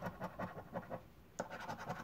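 A coin scratching the coating off a paper lottery scratch card in quick, short strokes, about ten a second, with a brief pause a little past halfway and a sharper scrape just after it.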